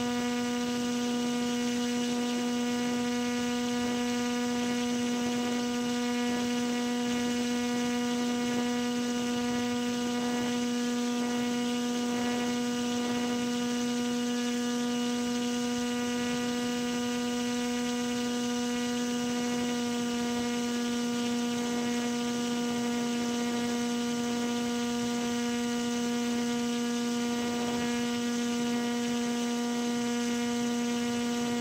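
A steady, unchanging hum: one pitched tone with evenly spaced overtones, holding the same pitch and level throughout.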